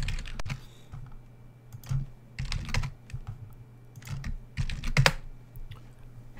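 Typing on a computer keyboard: a few short clusters of keystrokes, the loudest just before the end, over a low steady hum.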